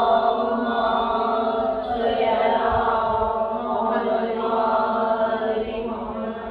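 Chanted voices held on one steady pitch, a drone-like sustained vocal tone rich in overtones.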